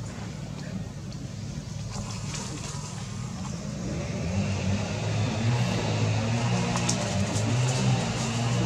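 A steady low rumble, then background music with held bass notes fading in about halfway through and growing louder.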